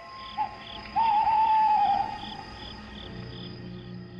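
Night-time insect ambience sound effect: cricket chirps repeating about three times a second over a soft, steady music drone. A wavering hoot-like call about a second long starts about a second in and is the loudest sound.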